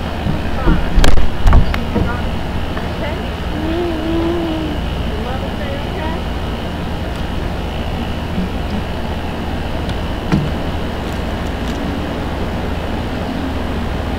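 Steady low rumbling background noise, with a few loud knocks about a second in and brief faint voice sounds.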